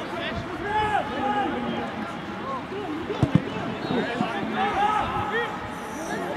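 Several voices calling and shouting at once, players and onlookers at a rugby ruck, overlapping throughout, with two short thumps about three seconds in.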